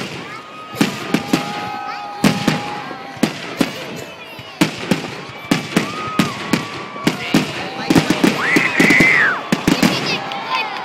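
Fireworks display: aerial shells bursting in quick succession, with many sharp bangs and pops that come thickest and loudest about eight seconds in.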